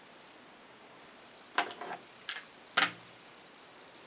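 Three short, sharp clicks or taps over quiet room tone, about a second and a half, two and a quarter and just under three seconds in: a clear acrylic quilting ruler and a rotary cutter being handled and set down on fabric over a cutting mat.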